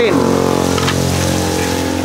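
Food sizzling on a hot flat-top griddle while metal tongs and a spatula turn shredded meat, with a few light clicks of the tongs about a second in. A steady mechanical hum runs underneath.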